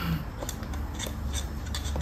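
Umbrella cockatoo's feet stamping and its claws clicking on a wooden floor: a few sharp, irregular clicks, a sign of the bird's displeasure.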